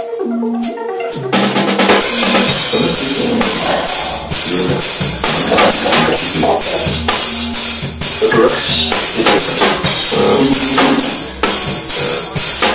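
Live electronic music: repeating synth notes, joined about a second in by a full drum beat with bass drum and snare and a bass line that carries on steadily.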